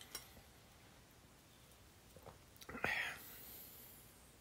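Faint sipping from an aluminium energy-drink can, with a small click just after the start. Near the end there is a short breathy exhale after swallowing, the loudest sound here.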